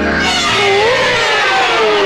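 Comic sound effect in a film soundtrack: a wavering, whining tone that slides down in pitch over a falling whoosh, as a character swoons in shock.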